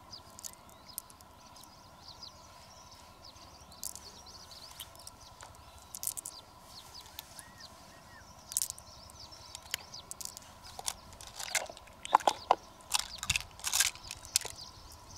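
Hands working through the wet flesh of an opened freshwater mussel, with scattered clicks and squelches as small beads are pulled out and handled. The clicks become busier and louder near the end.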